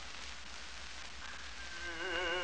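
Steady surface hiss and a low hum from an early shellac disc recording of an operatic tenor with orchestra, heard in a pause between sung phrases. A faint held note enters about a second in, and the tenor's voice, with a wide vibrato, comes back in right at the end.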